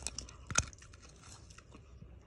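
Crispy breaded fried fish being eaten: a few sharp crunches, the loudest about half a second in, then quieter chewing.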